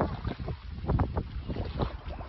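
Wind buffeting the microphone in uneven gusts, a low rumble with a few sharper gusts about a second in and near the end.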